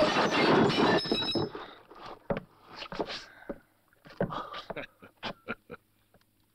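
A loud crash of glass bottles and crockery as a body is slammed into a shelf, with glass ringing for about a second and a half. Scattered knocks and clatters follow as things settle.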